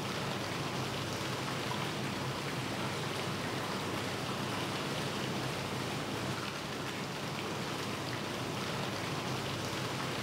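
Steady rush of water running and splashing through aquarium rearing tanks.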